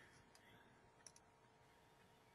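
Near silence with a few faint clicks, the loudest a quick pair just after a second in: a computer mouse clicking to advance a presentation slide.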